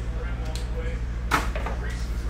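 A single sharp knock about a second in, as a sealed trading-card box is handled on the tabletop, over a steady low hum.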